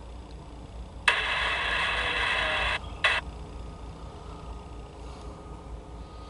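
Handheld scanner radio opening up: a burst of thin, noisy transmission cuts in about a second in, cuts off sharply near three seconds, and is followed by a brief squelch burst.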